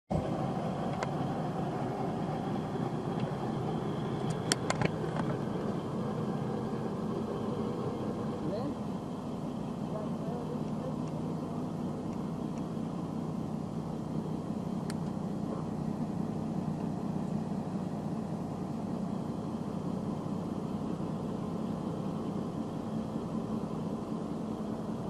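1988 International 8300 truck's diesel engine idling steadily, with a couple of sharp clicks about four and a half seconds in.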